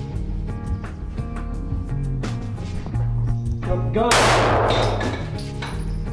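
Background music with a steady beat, and about four seconds in a single loud pistol shot ringing in a room, from a Glock 19 fitted with a Radian Afterburner compensator, just after a shout of "gun".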